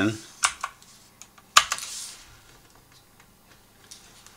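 A few computer keyboard keystrokes as a number is typed in: two light clicks near the start, then a sharper key press about a second and a half in, followed by a brief hiss.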